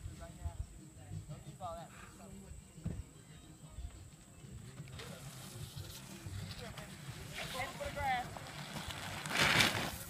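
Faint voices calling out over a steady wind rumble on the microphone. Near the end comes a loud, brief rushing swish as a person slides down the wet plastic sheet of a homemade slip-and-slide and reaches the bottom.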